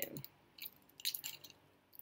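A few light clicks and taps as a shungite-bead bracelet is handled against the back of a small metal pocket flashlight.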